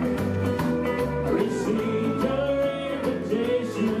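Live country band playing an instrumental passage on electric guitar, steel guitar, bass and drums, with the singer's voice coming back in near the end.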